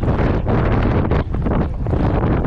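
Strong wind buffeting the microphone: a loud, gusty rumble that covers everything else.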